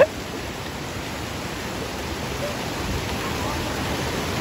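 A small stream cascade pouring over a rocky step into a shallow pool: a steady rush of falling water.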